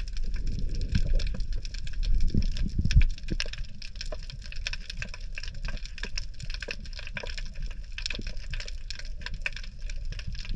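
Dense, continuous crackle of snapping shrimp and other reef clicks heard underwater through a camera housing. Low rumbling water noise and thuds fill the first three seconds and are loudest about three seconds in, then give way to the steady crackle.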